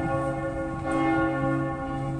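Church bells ringing, their overlapping tones merging into a steady, sustained peal.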